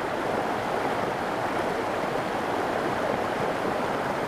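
Fast-flowing stream in full flow after heavy rain, rushing over rocks with a steady, even rush of water.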